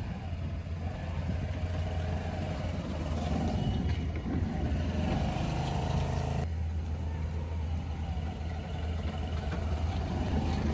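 Small single-cylinder scooter engine of a home-built spherical one-seater car running steadily as the car drives about, a low, even engine hum; the sound changes abruptly about six and a half seconds in.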